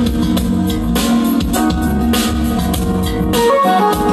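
Music with guitar and drums played loudly through a PA speaker system under a listening test, with strong bass.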